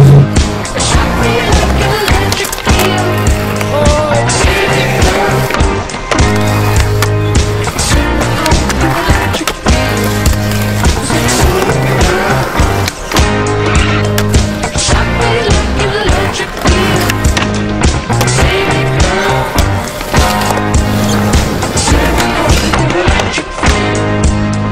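Music with a steady beat running throughout, mixed with skateboard sounds: wheels rolling on concrete and repeated sharp board clacks and landings.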